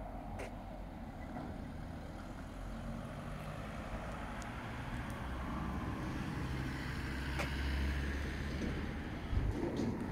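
A motor vehicle's low rumble that slowly grows louder, is loudest a couple of seconds before the end, then falls away, with a short low thump near the end.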